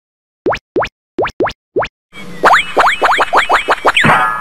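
Cartoon pop sound effects: five short rising 'bloop' pops, spaced apart, in the first two seconds. Then a rush of noise with a quick run of about eight more pops, ending in a sweep near the end.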